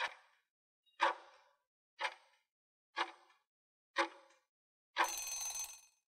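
Quiz countdown-timer sound effect: five ticks, one a second, then a longer ringing tone about five seconds in as time runs out.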